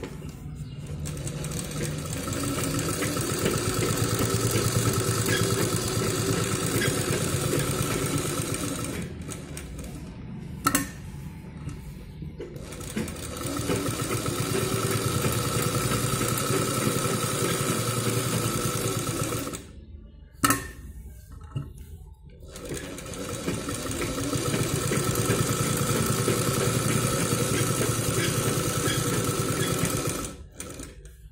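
SAHARA sewing machine stitching through cotton cloth in three runs, each winding up and easing off. It stops twice for about three seconds, with a few sharp clicks in each gap.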